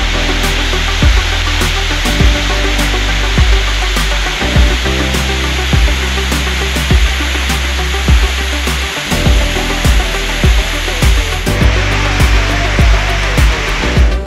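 Background music with a steady beat, drum hits about twice a second over sustained bass, with a loud even hissing layer on top.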